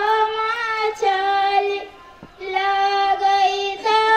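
A high voice singing a Bhojpuri wedding folk song in long, held notes, breaking off briefly about two seconds in.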